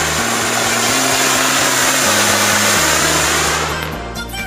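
Anaar (flowerpot fountain firework) spraying sparks with a loud, steady hiss that fades away near the end. Background music with a low bass line plays underneath.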